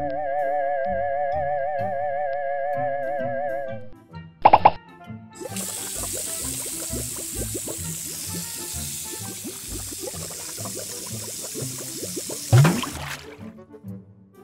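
A stream of water pouring into an inflatable plastic paddling pool: a steady splashing hiss that starts about five seconds in and stops just before the end, over light background music. Before the pour, a warbling whistle-like tone holds for about four seconds.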